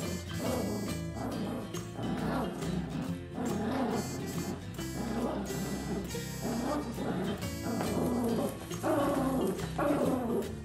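Small dogs barking and yipping in play while tugging at a plush toy, repeated short calls throughout.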